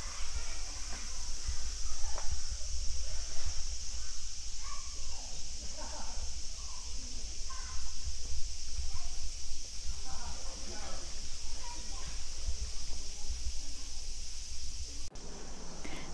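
Outdoor ambience: a steady high hiss, a low rumble, and faint, scattered murmured voices.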